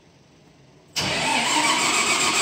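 Daewoo BS090 Royal Midi CNG bus engine making its first cold start of the day, heard from inside the passenger cabin: near silence for about a second, then it cranks and fires up suddenly and keeps running loudly.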